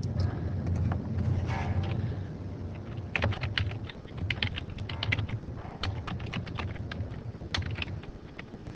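Computer keyboard being typed on: a quick, irregular run of key clicks that starts about three seconds in, over a low steady hum.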